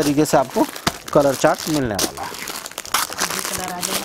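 Plastic packaging crinkling and rustling as clothes in plastic bags are handled, with a person talking over it.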